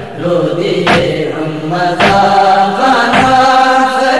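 A nohay, a Shia lament: a male reciter chanting a slow melody over a sharp percussive beat that falls about once a second.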